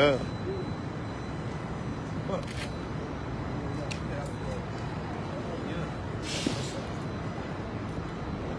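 City street ambience: a steady rumble of traffic with faint scattered voices, after the tail of a shouted "Shalom" right at the start. A brief hiss comes about six seconds in.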